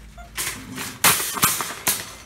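Metal wire shopping cart pulled out from a row of nested carts and pushed off, rattling and clanking in several loud bursts, the loudest about a second in.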